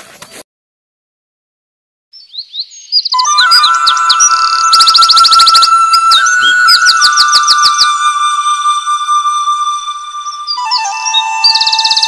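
Background music with sustained electronic tones and fast, twittering bird-like chirps. It comes in suddenly about two seconds in, after a short stretch of dead silence.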